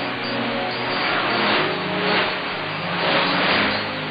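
Shortwave AM broadcast received through heavy static: music with held notes, changing pitch every half second or so, heard under a loud steady hiss and cut off in the treble.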